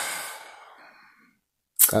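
A man's long, breathy sigh that fades away over about a second and a half, the sigh of someone overwhelmed with emotion.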